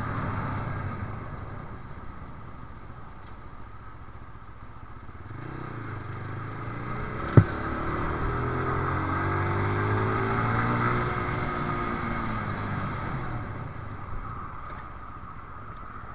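Motorcycle engine under a steady rushing noise, its note rising from about five seconds in and falling away again by about thirteen seconds. A single sharp click a little past seven seconds.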